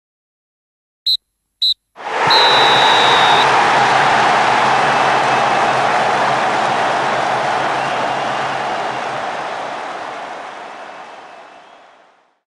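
Referee's whistle blown twice short and once long, the full-time signal, over a loud crowd roar that starts suddenly with the long blast and fades out slowly.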